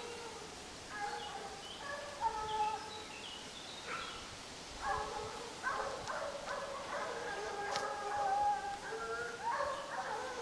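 A pack of hunting hounds baying on a wild boar's trail: several overlapping, drawn-out cries, scattered at first and nearly continuous from about halfway through as the pack gives tongue together.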